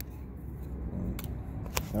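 Light clicks and rustling of trading cards and a foil booster pack being handled, over a low steady rumble.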